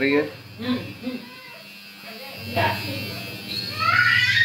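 A low, steady electrical buzz begins about two and a half seconds in and carries on.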